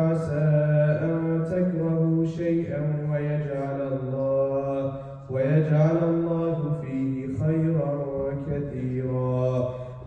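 A man reciting the Quran aloud in melodic Arabic chant (tajweed), leading the standing part of congregational prayer. He draws out long held notes with slow rises and falls, and breaks briefly for breath about halfway through.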